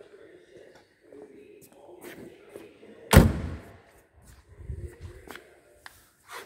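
A single heavy thump about three seconds in, with a short ringing tail, among fainter knocks and handling noises.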